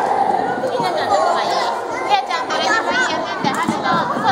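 Young children and adults chattering, several voices overlapping with no clear words.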